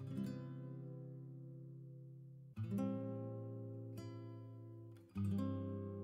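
Background music: acoustic guitar chords, each left to ring and slowly fade, with a new chord at the start, about two and a half seconds in, and about five seconds in.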